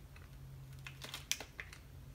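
Hard chili-bean jelly candy being chewed with the mouth closed: a few crisp crunches about a second in, the loudest a little after, over a low steady hum.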